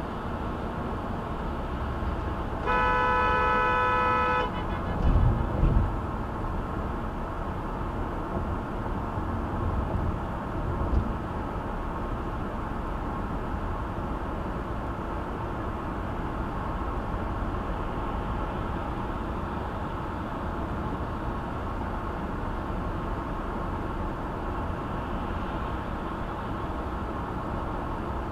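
A vehicle horn sounds one steady blast about three seconds in, lasting under two seconds, over the steady road noise of a car driving at highway speed. A few low thumps follow a second or two later, and another comes about eleven seconds in.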